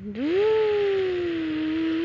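A child's voice imitating a truck engine: one long, drawn-out vocal drone that rises at first and then slowly sinks in pitch.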